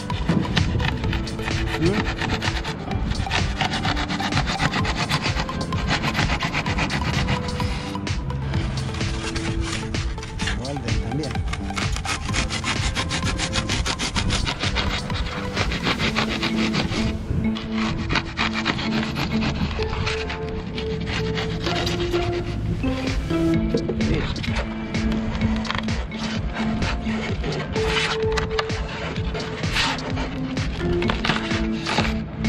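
Expanded polystyrene (tecnopor) foam block being sawn by hand with a blade, a continuous run of rapid rubbing back-and-forth strokes through the foam, over background music.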